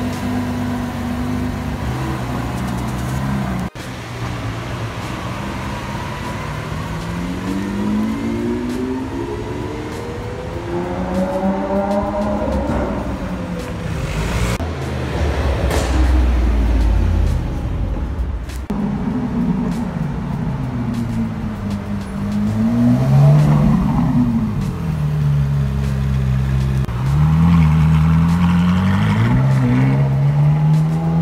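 Lamborghini Aventador SVJ's V12 idling steadily for the first few seconds. After a cut, a series of high-performance car engines rev and accelerate, their pitch climbing and falling several times.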